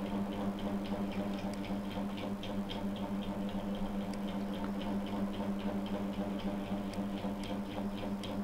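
A steady low electrical hum with evenly spaced overtones, over a run of faint, quick clicks from working a computer.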